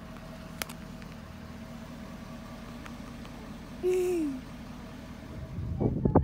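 A vehicle engine running with a steady low hum. A single click comes under a second in, and a brief tone falling in pitch about four seconds in.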